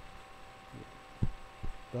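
Three soft low thumps, about half a second apart, over a faint steady electrical hum.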